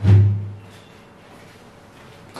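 A single deep boom right at the start, dying away over about half a second, followed by faint room tone.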